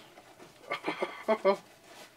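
A man's voice in a few short wordless bursts, a little under a second in, over otherwise quiet room sound.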